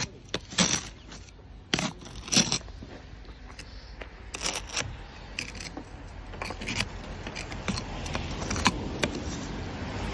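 Snow being scraped and pushed off a car's windscreen: a run of short scraping, crunching strokes, loudest in the first few seconds and lighter after that.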